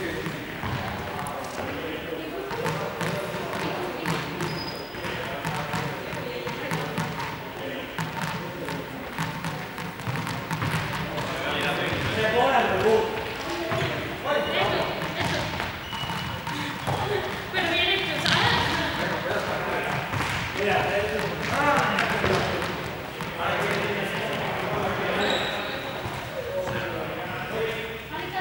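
Indistinct chatter of several people in a large sports hall, with repeated thuds on the hard floor.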